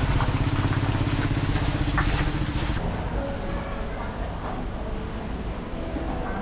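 Small step-through motorcycle with a cargo sidecar running as it rides past, its engine pulsing rapidly and steadily. About three seconds in the engine sound cuts off abruptly, giving way to quieter indoor background sound.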